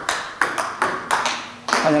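Table tennis rally: the ball clicking sharply off the bats and bouncing on the table, about five quick ticks at an even pace of two or three a second, then the rally stops.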